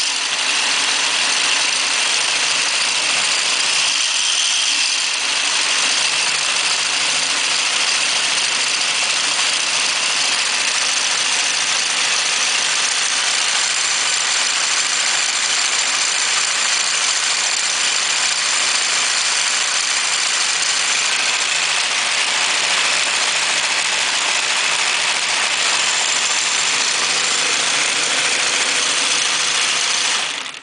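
A homemade magnet generator machine running fast: a bread-mixer motor drives plastic gears and a row of rocking arms that trip magnets, making a steady, dense mechanical clatter.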